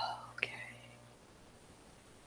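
Only voice: the tail of a heavy sigh, then a quiet, breathy "okay" about half a second in, followed by near silence.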